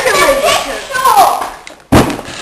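A child's voice talking or exclaiming, with no words that can be made out, dying away about a second and a half in. Then a single loud thump near the end.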